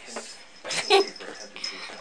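A Papillon puppy whimpering in high, thin whines, with a louder short sound just before a second in.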